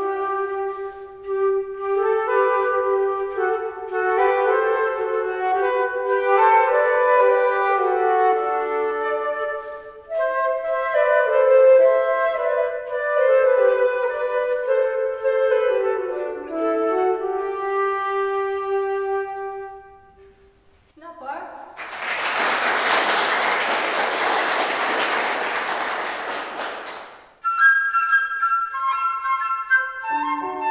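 Two concert flutes playing a duet, two melodic lines moving together, until the piece ends about twenty seconds in. Applause follows for about six seconds, then flute playing begins a new piece near the end.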